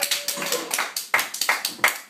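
A handful of people clapping by hand in a small room at the end of a band's song: separate, uneven claps, about three or four a second.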